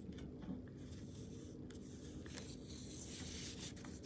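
Faint handling noise: light rubbing and scratching with a few soft taps, over a low steady hum.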